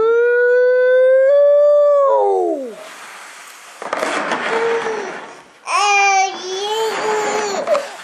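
A long, high, drawn-out "weee" call that slides down in pitch at its end. It is followed by a couple of seconds of rustling, scraping noise, then a wavering, whiny vocal sound from a toddler near the end.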